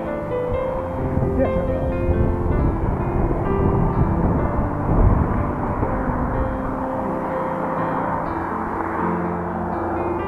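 Background music with held, sustained notes, laid over a steady rumble of wind noise on a moving bicycle's camera microphone. The rumble swells briefly about five seconds in.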